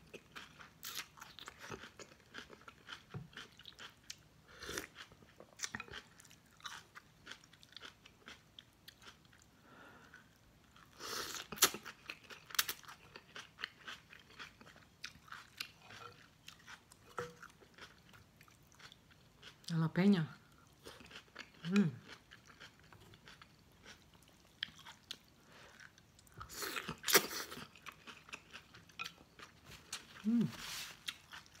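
Close-up mouth sounds of eating pho: rice noodles slurped and chewed with wet lip smacks and clicks, with a few louder slurps. Two short hums of enjoyment come about two-thirds of the way in.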